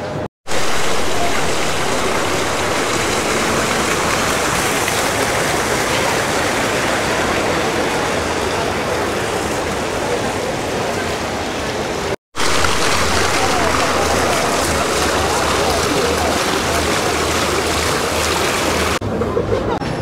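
Water fountain jets splashing into a stone basin: a steady, loud rush of falling water, with two brief breaks in the sound, just after the start and about twelve seconds in.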